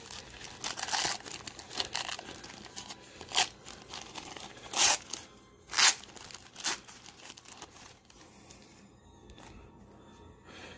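Silver-lined plastic wrapper of a 1990-91 Pro Set hockey card pack being torn open and crinkled by hand, in a run of short rips and crackles. The two loudest rips come a little before and just after the middle, and the handling grows quieter near the end.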